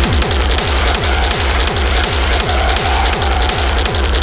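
Fast, hard industrial techno. A heavy kick drum hits about three times a second, each hit dropping in pitch, under dense hi-hats and a harsh, noisy synth layer.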